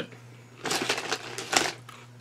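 Potato chips crunching as they are chewed: a run of crisp crackles lasting about a second and a half.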